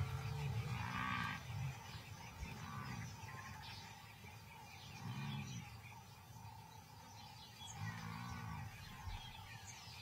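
African buffalo lowing: four or five low calls, each rising and falling in pitch, a few seconds apart. Faint bird chirps sound above them.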